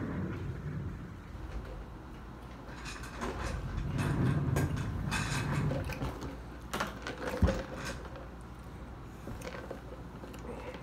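Rustling, shuffling and light knocks of a person moving about and handling things at close range, with a sharp thump, the loudest sound, about seven and a half seconds in.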